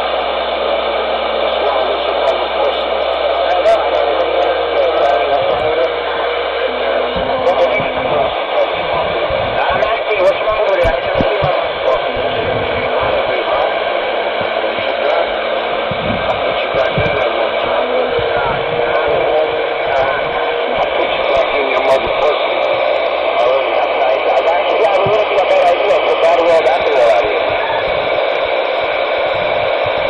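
A Ranger CB radio's speaker playing a steady wash of static, with garbled, unintelligible voices breaking through it.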